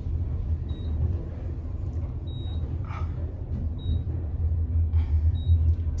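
KONE traction elevator cab descending, with a steady low rumble from the ride down the shaft. A faint, short, high beep comes about every second and a half, in step with the floors going by.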